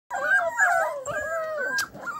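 Several six- to eight-week-old doodle puppies whining at once, their high wavering whines overlapping, with a short click near the end.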